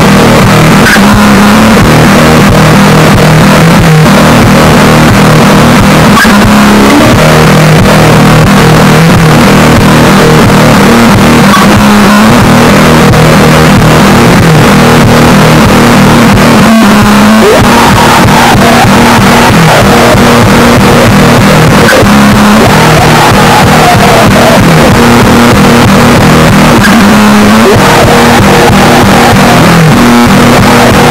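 Raw black metal recording: a lo-fi, hissy wall of distorted electric guitar holding chords that change every couple of seconds, at a constant, heavily compressed loudness.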